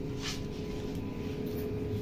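Plastic measuring scoop working a granular powder stain remover, with a brief gritty rustle about a quarter second in. Under it runs a steady low appliance hum with a constant tone.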